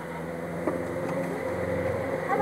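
A motor vehicle's engine running steadily and slowly growing louder as it approaches, with one light click about two-thirds of a second in.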